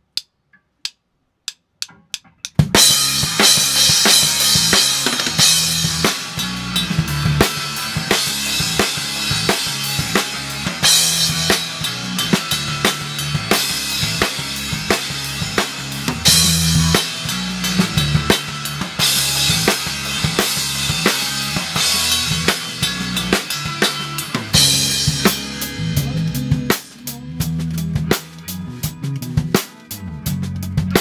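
A few sharp clicks in near silence, then a rock band comes in together about two and a half seconds in and plays on. The drum kit is heard close and loudest: kick, snare and crashing cymbals over guitar and bass.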